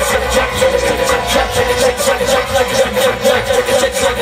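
Live rock band playing loudly through a PA: electric guitars and synthesizer keyboards over a fast, steady beat.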